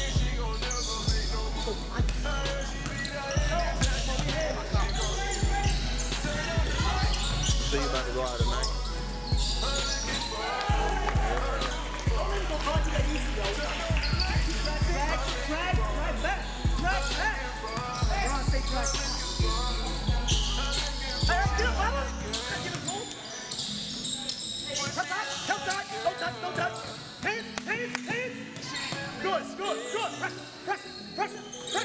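A basketball bouncing on a gym's hardwood floor during play, with voices, over background music with a heavy bass beat. The bass cuts out about two-thirds of the way through.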